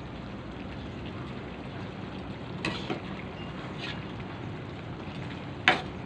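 Coconut-milk stew of green papaya and malunggay simmering in an aluminium wok with a steady bubbling hiss. A metal spatula scrapes and knocks against the pan a few times, loudest near the end.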